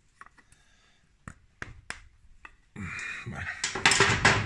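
A few light, sharp metallic clicks spread over about two and a half seconds as a bushing is worked by hand over a Harley-Davidson Sportster's crankshaft end into its oil seal, a tight fit.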